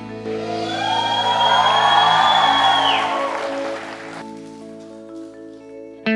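Background music of held synth chords. Over the first three seconds a noisy swell rises and falls, then the music settles to quieter sustained notes.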